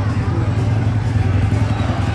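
Busy night-time street ambience: a steady, deep low hum with people's voices over it.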